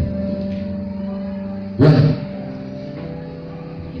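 A sustained keyboard chord starts at the opening and is held, slowly fading, with a short loud thump about two seconds in.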